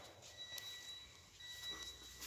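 A faint high-pitched electronic tone, sounding on and off at two pitches, over quiet background noise.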